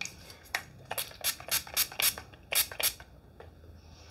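Hairspray being sprayed onto hair in a quick series of about eight short hissing bursts.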